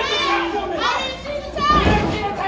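Wrestling crowd shouting and calling out, several high voices overlapping one another.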